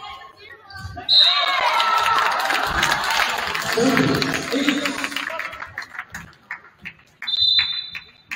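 A referee's whistle blows about a second in as a volleyball rally ends, and players and spectators cheer and shout for several seconds after it. Near the end a second whistle sounds for the next serve.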